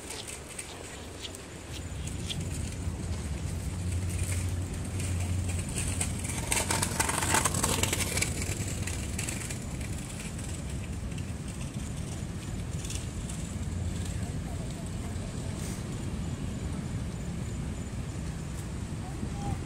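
Ocean surf breaking and washing on the shore, with wind rumbling on the microphone. One wave swells louder about six to eight seconds in.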